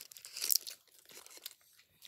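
Faint rustling and small mouth clicks of children eating sweets, with a brief noisy rustle about half a second in.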